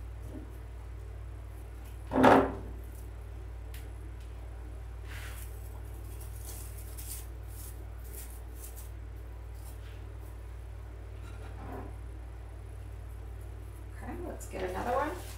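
Artificial pine branches being handled and tucked into a candle ring: faint rustles and light clicks over a steady low hum, with one short loud thump about two seconds in.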